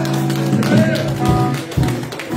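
Live worship band music: held chords sounding steadily over a drum kit, with several bass-drum thuds and a singer's voice rising briefly in the middle.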